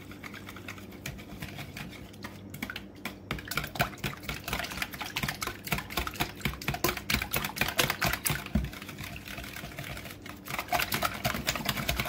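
Wire whisk beating eggs and milk in a bowl: fast, rapid clicking and tapping of the wires against the bowl with a wet slosh, lighter for the first few seconds, then quick and dense, easing off briefly near the end before picking up again.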